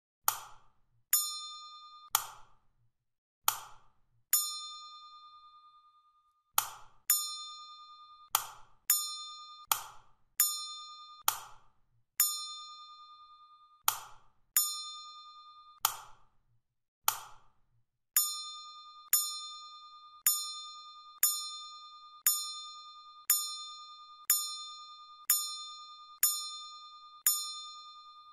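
A run of about thirty sharp electronic clicks, roughly one a second. Most are followed by a short ringing ding. These are synthetic interface sound effects marking each keypress step of a simulation.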